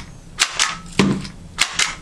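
Meto 2600-series handheld labeling gun clicking sharply as it prints and applies price labels. There are five crisp clicks, mostly in quick pairs.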